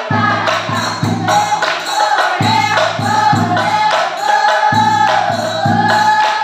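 A group of women singing an Assamese Nagara Naam devotional chant together, with large brass hand cymbals clashing and hands clapping in rhythm.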